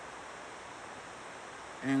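Steady, even background hiss of room tone picked up by a phone microphone during a pause in speech, with a man's voice starting near the end.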